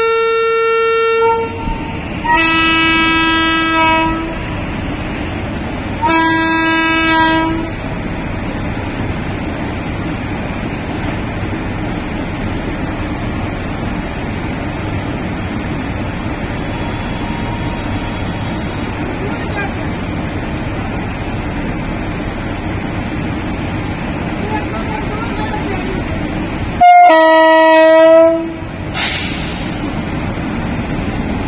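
Electric locomotive sounding its horn: a blast at a higher pitch, then two short blasts at a lower pitch in the first eight seconds, over a steady hum from the standing locomotive. After a long stretch of only that hum, one louder low blast sounds near the end.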